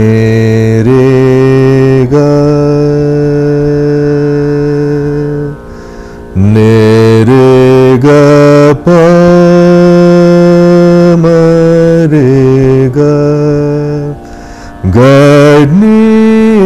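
A man singing phrases of Raag Yaman in long, held plain notes without oscillation, in a low voice, the way Yaman is sung as against the oscillating Carnatic Kalyani. The singing breaks off briefly twice, about five and a half seconds in and again near the end.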